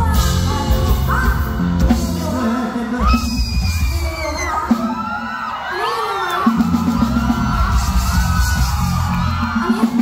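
Live band playing, with drum kit, bass and electric guitars, and voices over the music.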